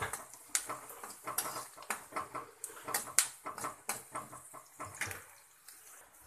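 A spoon scraping and knocking against a pan as chopped onions and green chillies are stirred while they fry. The strokes are quick and irregular and die away about five seconds in.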